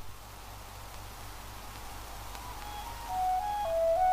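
Faint steady hum and hiss of an old film soundtrack, then a solo flute melody fading in about two seconds in: slow single notes stepping mostly downward, growing louder near the end.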